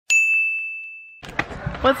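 A single bright ding: a struck-bell chime sound effect with one high pitch that starts sharply, fades over about a second, then cuts off abruptly.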